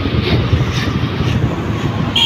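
Wind rushing and buffeting over the microphone on a moving motorcycle, a Hero Xtreme 160R 4V, with its engine and road noise under the wind.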